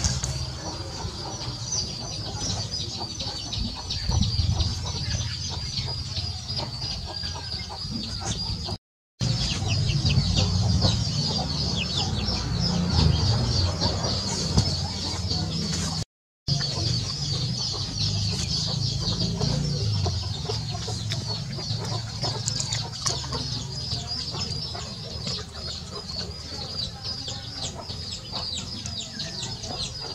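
Chickens clucking over a steady high-pitched chirring. The sound cuts out completely for a moment twice, about nine and sixteen seconds in.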